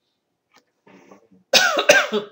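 A person coughing, a loud, sudden cough about one and a half seconds in.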